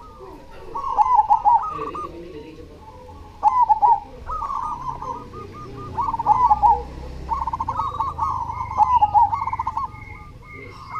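Zebra dove (perkutut) song: about five quick phrases of rapid, staccato cooing notes at a steady pitch, each phrase a short burst of trilled coos, the last and longest near the end.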